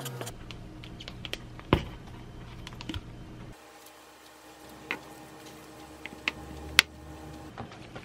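A kitchen knife knocking a few times on a wooden cutting board as scrambled egg is cut. Then a metal spoon spreads cooked rice over a sheet of gim on the board, with scattered light taps and clicks; the sharpest comes near the end.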